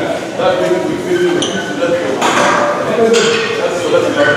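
Men's voices talking indistinctly in a gym, with a brief high ping about a second and a half in.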